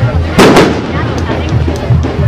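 A single loud bang about half a second in, over music and crowd chatter.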